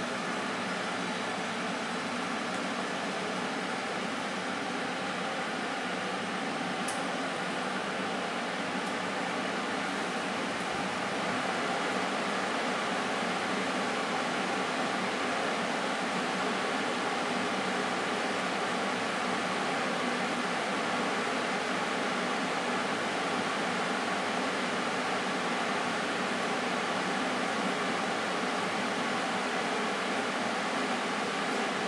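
Hobart HBA2G double rack gas oven running a bake cycle: a steady, even rush of fan and burner noise, slightly louder from about twelve seconds in.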